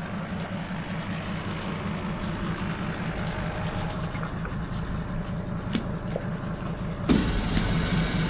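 Fuel tanker truck's engine idling steadily, a low even hum that grows louder about seven seconds in.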